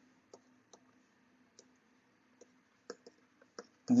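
Stylus tip tapping on a tablet's glass screen while writing by hand: faint, sharp clicks, about seven, at irregular intervals.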